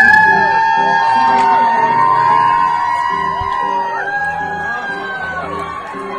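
Live concert sound from an audience phone recording: a woman's voice holds a long high note, breaks about four seconds in and takes up another, over steady accompaniment, with audience whoops and shouts mixed in.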